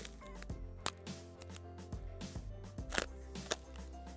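Soft background music, with a few sharp, irregular crackles of plastic cling film being pressed and smoothed around a bar of soap; the loudest crackle comes about three seconds in.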